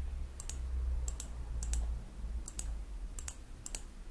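Computer mouse button clicked about six times, each a sharp pair of clicks (press and release), while numbers are entered on an on-screen calculator. A faint low hum sits underneath.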